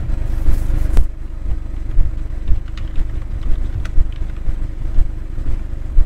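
A steady low rumble of background noise with a faint hum. Over it come a few scattered faint clicks, the clearest about a second in, consistent with a name being typed on a computer keyboard.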